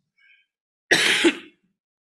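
A man clears his throat with a short cough, about a second in, lasting about half a second.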